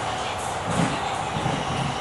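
Purple Line elevated metro train running between stations, heard from inside the carriage: a steady rushing noise with a constant whine. The low rumble swells slightly about a second in.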